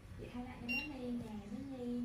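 A woman's voice talking, not picked up as words, with one short high-pitched beep about three-quarters of a second in.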